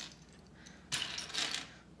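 Loose plastic LEGO bricks clicking and clattering against each other as they are picked through and pushed around by hand on a tray: two brief clatters, about a second in and again half a second later.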